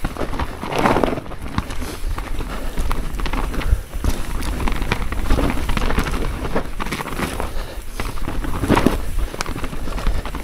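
Mountain bike descending a rough dirt forest trail: tyres rolling over the ground with a steady rumble, the bike rattling and clicking over roots and bumps. The noise swells about a second in, midway and again near the end.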